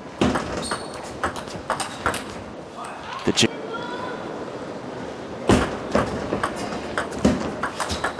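Table tennis ball clicking sharply off the bats and table in quick exchanges, with a loud pair of hits about three and a half seconds in and another run of hits from about five and a half seconds on.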